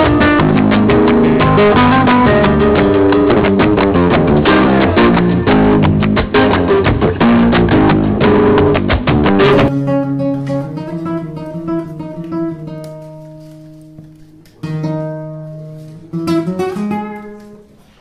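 Loud, dense instrumental music that cuts off about ten seconds in. A solo flamenco guitar then opens a seguiriya with single plucked notes and strummed chords, each left to ring and die away, with fresh strums twice near the end.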